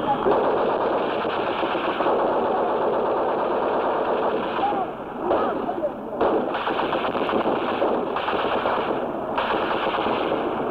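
Rapid, continuous automatic gunfire, machine-gun fire, with a short break about five seconds in and brief shouting voices around the middle. It has the dull, top-cut sound of an old film soundtrack.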